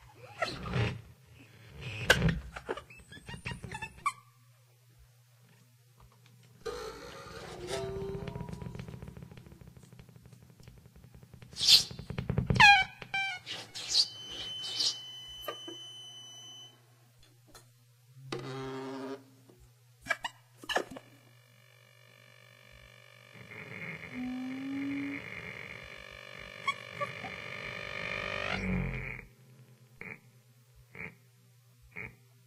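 Free-improvised music from a small ensemble of saxophones, violins, guitars and electronics: scattered squeaks, plucks and clicks, then a flurry of sliding squeals with a thin steady high tone. In the last third a held chord of several tones builds and stops abruptly shortly before the end, over a steady low hum throughout.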